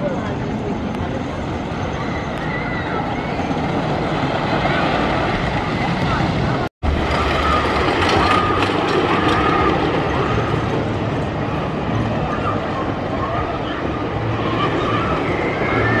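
Swamp Fox wooden roller coaster train running along its track, with people talking in the background. The sound cuts out for a moment about seven seconds in.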